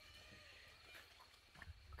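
Near silence: faint outdoor background with a faint, steady high-pitched tone that fades out about a second in.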